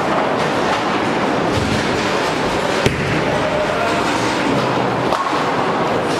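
Busy bowling-alley din: bowling balls rumbling along the wooden lanes and pins and pinsetting machines clattering, with a sharp knock about three seconds in.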